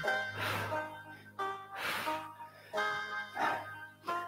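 Background music with held notes and a soft swishing hit about every second and a half.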